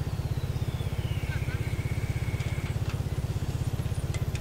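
Motorcycle engine running steadily at low cruising speed, its exhaust pulsing quickly and evenly.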